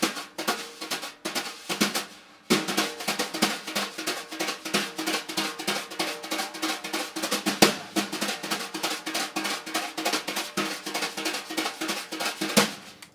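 Wire brushes playing a fast jazz swing pattern on a snare drum, two strokes with the right brush and the third with the left, giving a galloping "giddy-up, giddy-up" feel. Rapid, even strokes, with a short break about two seconds in before the pattern runs on steadily.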